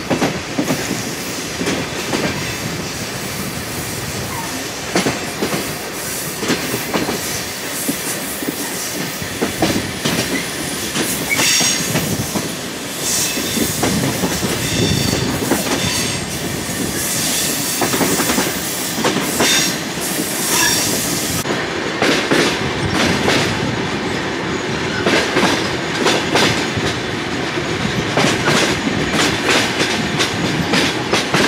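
Passenger train running on its rails, heard from an open carriage window: a steady running noise with the clack of the wheels over rail joints. From about eleven seconds in, the wheels squeal high-pitched for about ten seconds, coming and going.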